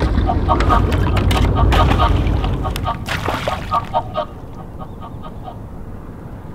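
Ducks quacking in quick repeated series over a low rumble of water or wind; the calling thins out about four seconds in.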